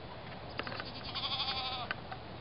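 A goat bleating once: a wavering call just under a second long in the second half, with a few short clicks before it.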